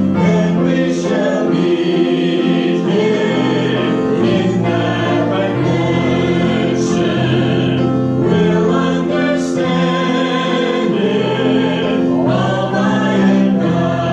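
Several voices singing a hymn together in long, held notes.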